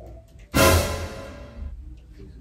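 A sudden loud musical hit about half a second in, a dramatic sting with a deep boom under it, fading away over about a second.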